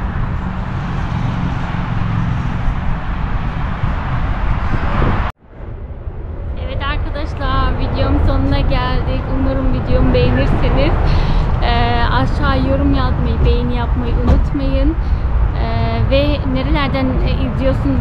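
Steady wind rumble on the microphone, cut off abruptly about five seconds in. After a short gap it resumes under a woman talking.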